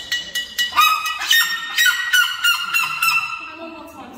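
Red-legged seriema calling: a rapid series of loud, repeated calls, strongest in the middle and dying down near the end.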